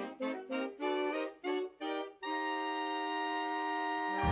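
A big band's reed section, saxophones with a clarinet, playing a short phrase on its own without bass or drums: about six short detached notes, then one long held note.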